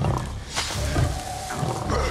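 An ape's low, rough vocal sounds over a trailer score that pulses low about twice a second, with a held tone entering about midway.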